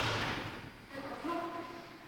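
A blow lands in a sparring exchange with a sudden loud impact that echoes around the hall. About a second later comes a short burst of voice.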